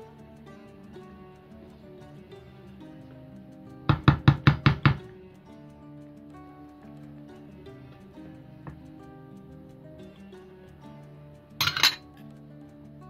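About four seconds in, a wooden spoon knocks against a glass mixing bowl about six times in a quick run, lasting roughly a second, as thick cake batter is stirred briskly. A brief, sharper clatter follows near the end. Background music plays throughout.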